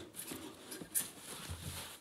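Foam packaging wrap rustling faintly as it is lifted off a chrome wheel in its cardboard box, with one sharp crackle about halfway through.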